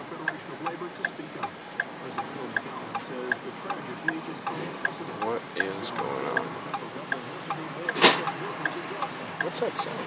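A car's flasher relay clicking steadily in the cabin, about two to three clicks a second. A single sharp click about eight seconds in is the loudest sound.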